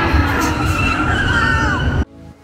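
Test Track ride vehicle running on board through the dark show building: a loud, steady low rumble with several whining tones above it, one gliding downward in the second half.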